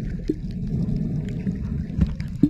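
Underwater sound picked up by a camera in shallow water: a steady low rumble of moving water, with a short chirp-like blip about a third of a second in and faint clicks.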